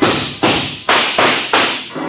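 Radio-drama gunfire sound effect: five gunshots in quick, uneven succession, each with a short fading tail.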